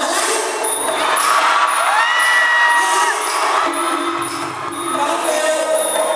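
Likay stage music with a steady high metallic beat, under audience cheering and shouting. About two seconds in, a single long note slides up and holds for about a second.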